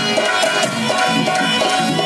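Indian folk music with hand drums keeping a fast, steady beat under a melody line.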